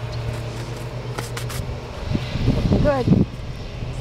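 Hands smoothing soil and bark mulch around a freshly planted iris, with a few light scrapes and clicks, over a steady low hum. A woman says "good" near the end.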